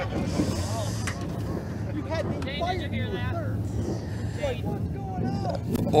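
Indistinct voices of people talking and calling out over a steady low engine hum.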